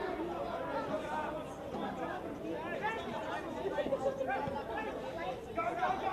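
Several people talking at once, an indistinct babble of voices with no single clear speaker.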